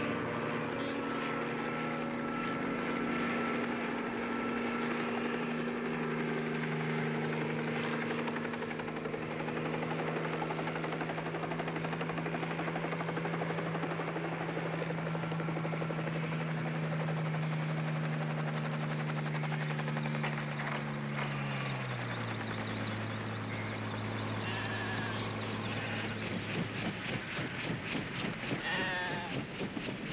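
Bell 47 helicopter flying in and landing, its engine and rotor giving a steady drone. About two-thirds of the way through the pitch drops as it sets down and throttles back, and near the end the blade beat turns into a slower, distinct chop.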